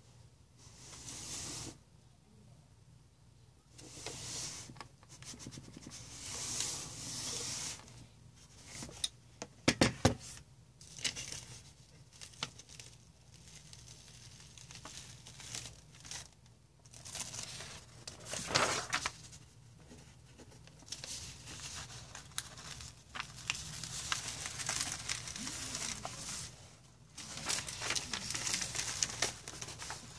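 Sheets of paper and plastic cling wrap rustling and crinkling as a clothes iron is run over the paper and the paper is handled and lifted, with a few sharp knocks about ten seconds in.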